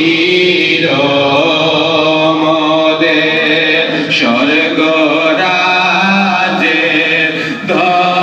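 A man singing a Bengali Sufi devotional song (sama) into a microphone, in long held notes that glide slowly between pitches.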